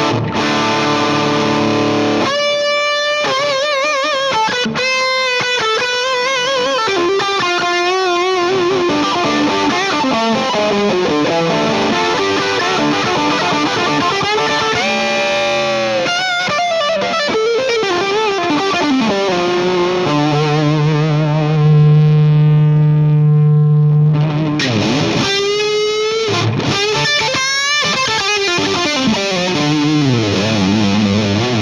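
Overdriven electric guitar, a PRS SE Custom 24 played through an Orange Micro Dark Terror hybrid amp head (tube preamp, solid-state power amp). Single-note lead lines with wide vibrato and string bends, then a long sustained low note near the end before faster playing resumes.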